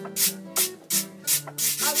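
Green bananas being grated by hand, an even rasping scrape about three strokes a second, over a strummed string instrument; a singing voice comes in near the end.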